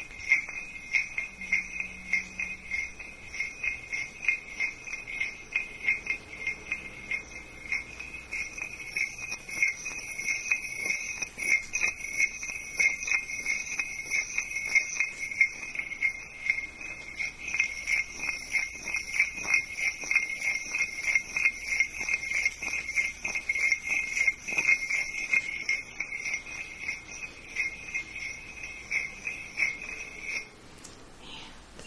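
Small metal bells shaken continuously: a steady, high jingling with many quick, irregular louder shakes on top, which stops abruptly at the very end.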